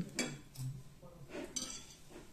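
A metal spoon clinking lightly against a ceramic bowl while eating, with a brief clink about a second and a half in.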